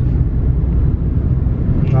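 Steady low rumble of a car creeping along in slow traffic, heard from inside the cabin.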